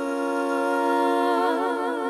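A cappella vocal trio, two women and a man, holding a sustained chord in close harmony, with vibrato coming into the voices past the middle.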